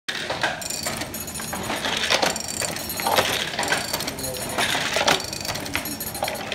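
Hand loom weaving tweed: a run of irregular wooden clacks, about one or two a second, as the shuttle is thrown across and the beater knocks the weft in, with a metallic jingle ringing after many of the strokes.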